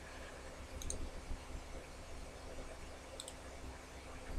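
Two faint computer mouse clicks, about a second in and again near the end, over a low steady hum of room tone.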